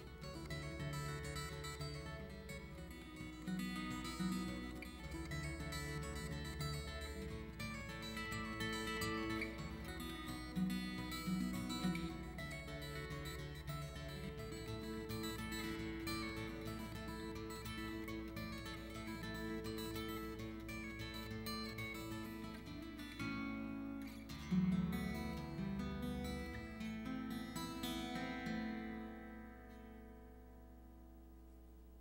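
Solo acoustic guitar played fingerstyle, a bass line under plucked melody notes. Near the end the playing stops and the last notes ring out and fade.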